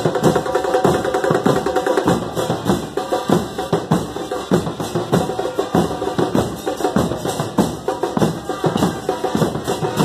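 A murga drum line plays large bass drums in a steady, driving rhythm of dense, regular strikes.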